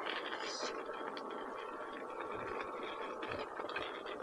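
Begode S22 electric unicycle rolling slowly on a gravel path: quiet, steady tyre noise on grit with a faint steady whine and a few small ticks.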